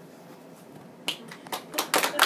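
Audience starting to applaud: after a quiet first second, a few scattered hand claps come about a second in and quickly grow closer together as more people join.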